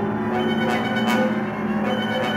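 Live chamber ensemble playing a contemporary film score: sustained low chords and held tones, with a couple of light struck accents near the middle.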